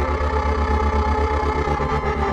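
Live experimental electronic music: a rapidly pulsing low synthesizer bass drone under a dense layer of sustained, steady synth tones.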